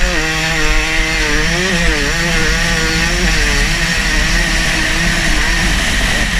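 Dirt bike engine running hard under the rider, its revs dipping briefly about two seconds in and then holding at a steady high pitch.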